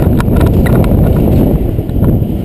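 Mountain bike ridden fast over a gravel trail: wind on the microphone and tyre rumble, with frequent rattling clicks and knocks from the bike over the rough ground.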